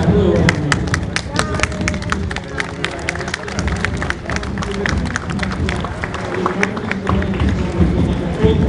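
Spectators clapping by hand: scattered, irregular claps, thickest over the first few seconds and then thinning out, over crowd chatter.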